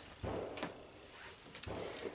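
Faint handling noise: a few soft rustles and light knocks as fabric is handled.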